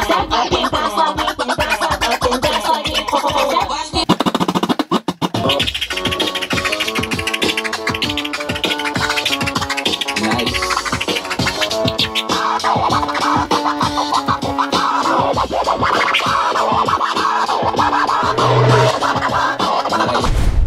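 Vinyl record scratched by hand on a DJ turntable over a beat, the sound chopped into quick rapid strokes, with a brief stutter about four to five seconds in.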